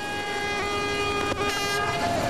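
Spectators' horns sounding a steady held tone, with a brief higher horn blast about one and a half seconds in, over crowd noise at the ski-jump landing hill.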